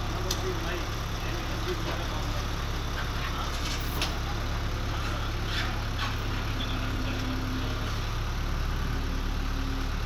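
A flatbed tow truck's engine running steadily with a low drone while a car is loaded onto its tilted bed.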